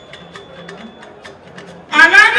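Live fuji band playing softly: a quick, even clicking percussion, about five strokes a second, over a low bass line.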